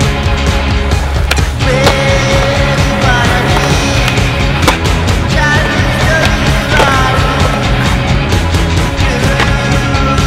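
Skateboard on concrete: wheels rolling and several sharp clacks of the board popping and landing, heard under loud background music.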